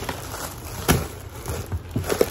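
Bubble wrap and a cardboard box being handled: soft crinkling and rustling, with one sharp click about a second in.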